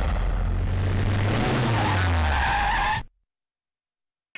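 Loud, noisy edited sound effect with low tones sliding downward, cut off abruptly about three seconds in, followed by about a second of silence.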